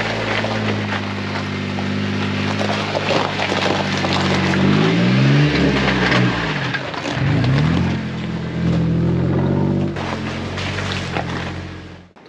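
Jeep Wrangler JK's V6 engine crawling at low speed over a rough, icy dirt trail, its revs rising and falling twice around the middle, with the crunch and crackle of tyres on gravel and ice.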